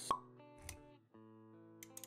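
Intro jingle music with a sharp pop sound effect right at the start, a soft low thump a little later, and a new chord about a second in.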